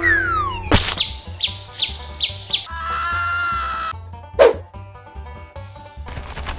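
Cartoon sound effects over a background music track: a falling whistle, then a sharp swish, a run of five quick repeated strokes, a held tone, and a second sharp swish about two-thirds of the way in.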